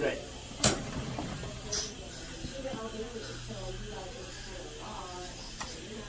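Quiet dental-treatment room: a steady low hum with faint, murmured voices, broken by one sharp click a little over half a second in and a couple of lighter ticks later.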